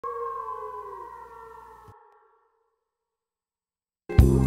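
A ringing tone made of several steady pitches, one sliding slightly down, fading out over about two seconds, then silence.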